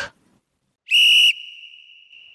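A single short, high whistle blast about a second in, one steady pitch, followed by an echoing tail that fades away. It is an edited-in sound effect.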